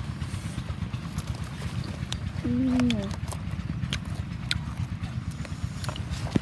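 A child's short vocal sound, a brief hum-like syllable that falls slightly in pitch, about two and a half seconds in, over a steady low rumble with scattered small clicks from handling the peppers and the bottle.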